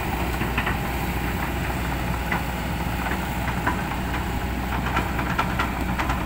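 Kobelco SK200 crawler excavator's diesel engine idling steadily, a low even hum with a few faint ticks scattered through it.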